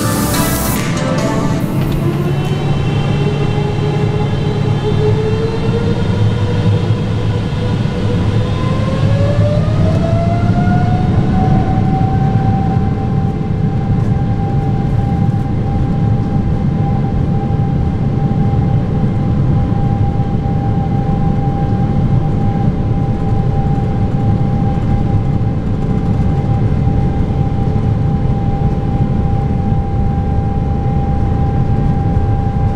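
Boeing 777-300ER's GE90 turbofan engines heard from inside the cabin over a steady low rumble. Their whine rises in two steps over the first dozen seconds and then holds at one steady pitch as the engines spool up to takeoff thrust.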